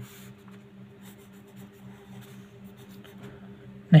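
Pen writing on paper: faint, irregular scratching strokes as a line and characters are drawn, over a steady low hum.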